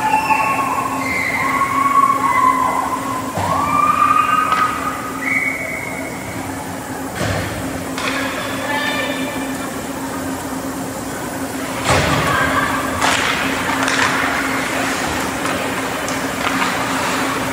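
Ice hockey game sounds in an echoing indoor rink: a steady low hum, with drawn-out shouted calls in the first few seconds. Later come sharp knocks of sticks and puck on the boards, about seven and twelve seconds in and again after that, over the hiss of skates on ice.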